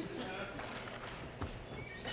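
A quiet pause with faint stage room noise and a single soft knock about one and a half seconds in, as a hanging sign drops against the front of a table.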